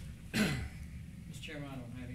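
A man clears his throat once, sharply and briefly, and then makes a short voiced sound that falls in pitch.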